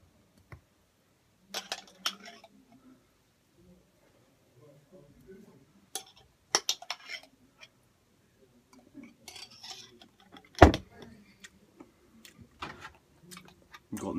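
A jar and other food containers being handled: scattered clinks, knocks and rustles, with one loud thump about ten and a half seconds in.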